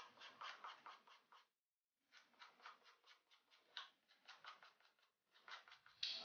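An open scissor blade scraping across the sole of a new pointe shoe in quick, faint strokes, about five a second, with a short pause about a second and a half in. The sole is being roughened to give it tread against slipping.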